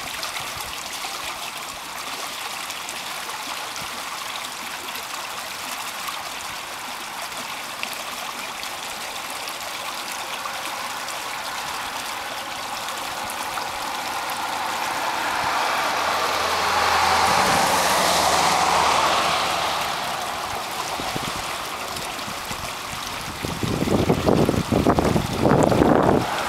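Small creek water running over a short drop between grassy banks: a steady rushing and gurgling. About two-thirds of the way through a louder swell of noise with a low hum rises and fades, and near the end there are a few seconds of irregular, louder sounds.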